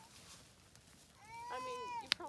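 A child's voice holding one high, drawn-out note, starting a little past halfway through after a quiet start.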